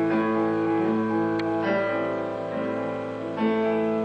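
Piano playing the introduction to an art song for soprano and piano: slow, sustained chords and held notes before the voice enters.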